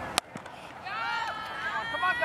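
A cricket bat striking the ball once with a sharp crack, followed about a second later by several high-pitched young voices calling out together.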